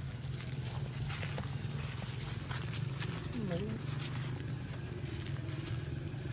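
Light crackling of dry leaf litter under a walking macaque, over a steady low hum, with one brief vocal sound that dips and rises in pitch about three and a half seconds in.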